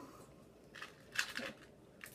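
Small clear plastic box handled, giving two short crinkling crackles, the second louder.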